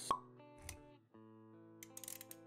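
Intro-animation sound design: a sharp pop sound effect just after the start, over a jingle of held musical notes. A low thud follows a little later, and the music drops out briefly around one second in before resuming.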